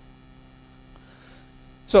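Low, steady electrical mains hum from the lecture hall's microphone and sound system, heard during a pause in the talk.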